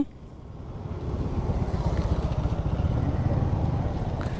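Sport motorcycle engine running at low speed as the bike rolls slowly, rising over the first second and a half and then holding a steady low rumble.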